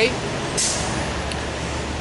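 Low, steady rumble of heavy road traffic, such as a truck or bus, with a short hiss about half a second in.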